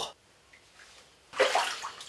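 A bathtub shifting under the weight of a person standing in it: a short noise about a second and a half in, after near silence.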